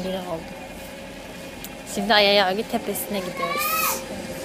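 A woman's voice: a loud, drawn-out, wavering exclamation about two seconds in, then a high call that rises and drops near the end.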